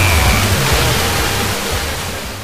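A distant Mexican FM station, XHGIK 106.3, received long-distance by sporadic-E skip. Music plays under a steady hiss of static, and the signal slowly fades down into the noise.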